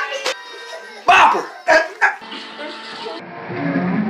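A dog barking three times in quick succession, about half a second apart, over background music.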